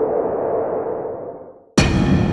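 Electronic sound-effect sting: a swelling, rushing sound over a steady low tone that fades away, then a sudden struck hit near the end that rings on and decays.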